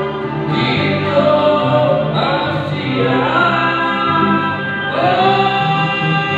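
A keroncong band playing live, a male singer's voice gliding between notes over acoustic guitar, violin and cello.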